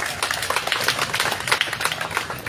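Audience applauding: a short round of many irregular hand claps.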